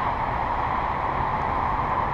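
Steady rushing background noise without speech, even in level, most of it low in pitch.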